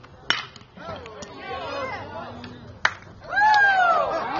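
A bat cracks sharply on a pitched baseball about a quarter second in, followed by scattered spectator voices and another sharp crack near the end. Then loud, long spectator shouts rise and carry to the close.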